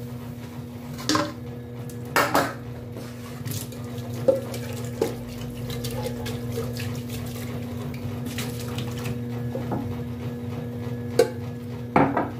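Aluminium pan being scrubbed with a sponge and rinsed under a running tap in a stainless-steel sink, with a few sharp clanks of the pan. Under it, a small agitator washing machine (tanquinho) hums steadily.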